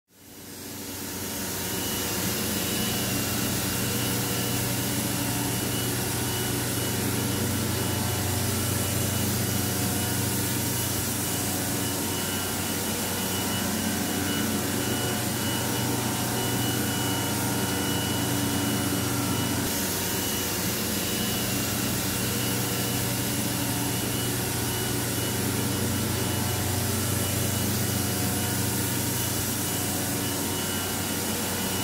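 Steady machinery roar with a low hum and a thin high whine, fading in over the first two seconds and then holding steady.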